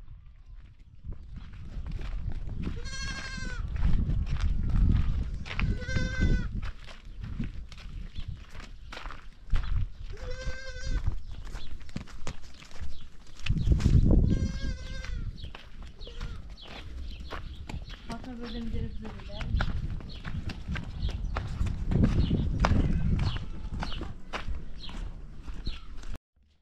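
Goats bleating repeatedly, four or five wavering cries a few seconds apart, over a steady low rumble with scattered short clicks.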